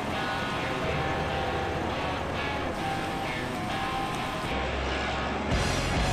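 Background music, with a fuller part and louder bass coming in near the end.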